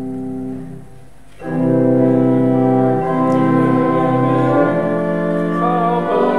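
Organ playing the introduction to a hymn in sustained chords: a held chord fades out about a second in, and after a brief gap the full chords come back louder.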